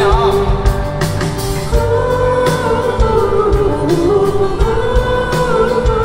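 Live pop-rock band playing over a steady drum beat, with a wordless "wuu wuu" vocal line sung in long held notes.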